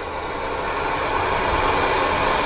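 Propane camp-stove burner running under a small metal pot of water: a steady rushing flame noise that grows gradually louder.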